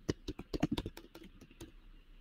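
Computer keyboard typing: a quick run of about a dozen keystrokes that stops shortly before the end.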